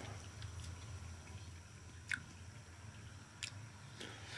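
Faint chewing of a melon flower, with two soft mouth clicks: one about two seconds in and one near the end.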